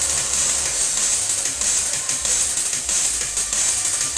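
Drum and bass mix playing from vinyl on turntables: busy, bright hi-hats and cymbals over pulsing deep bass, with the sound a bit off in quality.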